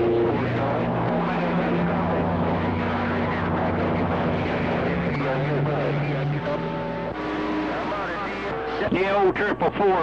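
CB radio receiver audio: distant stations' voices coming in garbled and overlapping under a noisy band, with steady whistling tones that hold and then jump to new pitches every second or so. A clearer voice comes through near the end.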